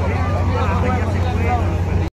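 People talking over a steady low hum.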